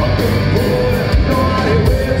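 Live heavy metal band playing at full volume, with a male singer holding a wavering sung line over electric guitar and a pounding low end, heard from the audience in a large hall.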